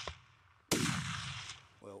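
Rifle shot about two-thirds of a second in: a sharp crack that rolls away and fades over most of a second. The tail of an earlier shot is dying away at the start.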